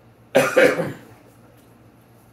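A man coughing: a short, loud double cough about a third of a second in, the two coughs in quick succession.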